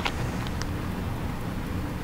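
Steady low background hum with a sharp click right at the start and a fainter tick about half a second in: small handling sounds while thread is wrapped on a fly in a tying vise.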